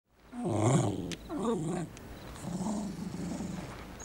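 A small dog, a Jack Russell terrier, growling in three bouts, the first the loudest and the last a longer, softer grumble.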